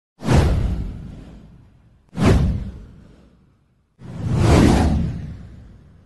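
Three whoosh sound effects for an animated title card, about two seconds apart: the first two hit at once and fade away, the third swells up before fading.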